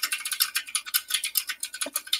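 Computer keyboard typing: a quick, irregular run of key clicks.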